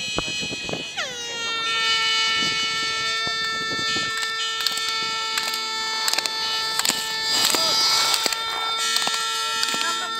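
A spectator's air horn held in one long blast, its pitch dropping sharply about a second in and then holding steady, while sharp clacks come from the slalom gate poles being knocked aside by the skier.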